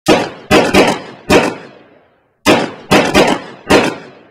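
A rapid series of gunshots: nine sharp, loud shots in two volleys, four and then five, each with a short echoing tail.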